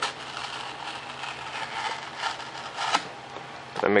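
A hobby knife blade cutting through a foam wing: an uneven scratchy rasp that swells and fades with the strokes of the blade, with a sharp click about three seconds in.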